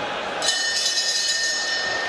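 Boxing ring bell struck once and ringing on for about a second and a half, marking the end of the round, over steady arena crowd noise.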